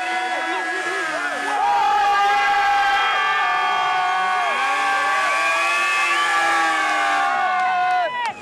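Several stunt motorcycle engines revving high, their revs held for seconds and sliding slowly up and down, with crowd noise behind.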